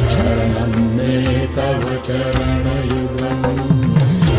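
Hindustani devotional singing: a male voice sings a Sanskrit hymn to Shiva with accompaniment, holding one long note over a steady drone.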